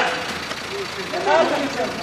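Several people's voices talking indistinctly over the steady noise of a car engine idling.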